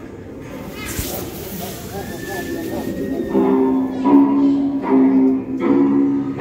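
A triggered Halloween attraction's soundtrack starts up: a burst of hissing about a second in, then from about three seconds in a loud music loop of repeated low notes, pulsing about once a second.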